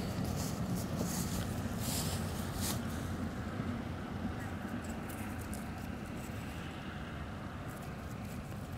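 Steady low outdoor rumble, with faint handling noises in the first few seconds.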